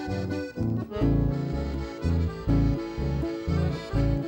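Button accordion leading a chamamé with band accompaniment and a regular low bass beat; about a second in the playing comes in fuller and louder.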